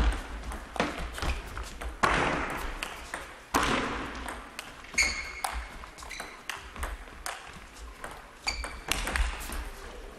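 Table tennis rally: the ball's sharp pocks off the rubber-faced rackets and the table, at an uneven pace through the exchange.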